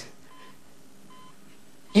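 Two faint, short electronic beeps from a hospital patient monitor over quiet room tone. A woman's voice starts right at the end.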